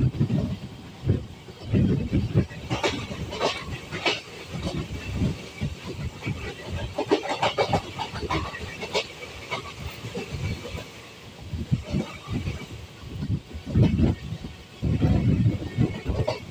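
Gomti Nagar Express passenger train running on the rails, heard from an open door or window: irregular wheel thumps and clacks over rail joints with rattling. Around the middle, the denser clatter of a train passing close by on the next track joins in.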